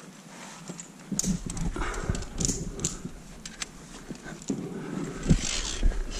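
Via ferrata climbing noises: irregular sharp clicks and knocks of lanyard carabiners and boots against iron rungs and rock, mixed with scraping and rustling. The loudest knocks come near the end.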